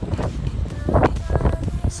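Strong hurricane wind buffeting the phone's microphone: a loud, low rumble that rises and falls in gusts.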